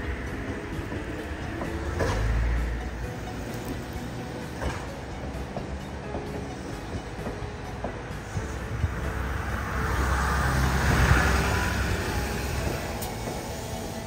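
Yellow Seibu Railway electric train (set 263F) rolling past on the tracks: a low rumble that swells twice, with a few short clicks.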